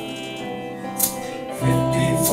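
Live band playing an instrumental passage of an indie folk-rock song on guitars, bass and drums: held chords with a single sharp percussion hit about a second in, then the bass and full band come in louder near the end.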